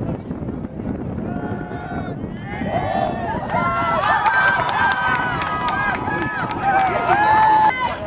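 Crowd in the stands shouting and cheering as a play unfolds, many voices building from about two and a half seconds in, with scattered claps. It cuts off abruptly just before the end.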